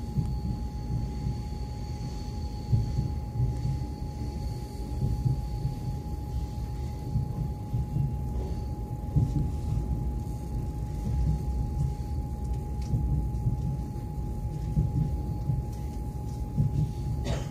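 Low, steady rumble of an MCC Lastochka electric train running on the track, heard from inside the carriage, with a constant high hum from its electrical equipment.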